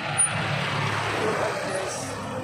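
Street traffic: a motor vehicle running close by, a steady rush of engine and road noise.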